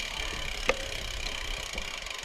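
Framed Basswood Carbon gravel bike rolling along a dirt trail: steady tyre noise on packed dirt and leaves with drivetrain rattle, and one sharp click about a third of the way in.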